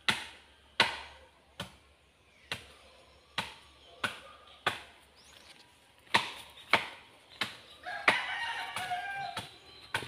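Repeated chopping blows, about eleven sharp strikes a little under a second apart with a short pause midway. A rooster crows in the background near the end.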